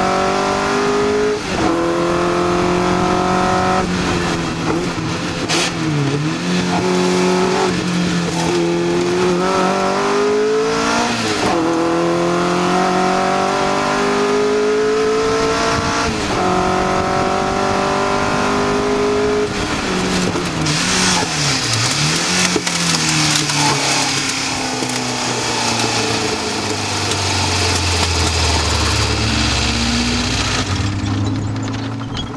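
Ford Zetec four-cylinder engine in a track car pulling hard through the gears, its note rising and then dropping at each upshift. About twenty seconds in come several quick dips and rises in pitch. In the last few seconds the engine falls to a low note under a loud rushing noise as the car runs onto the grass.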